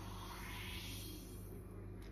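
Faint high fizzing of a freshly poured carbonated gin and tonic in a glass, swelling briefly and fading, over a low steady hum.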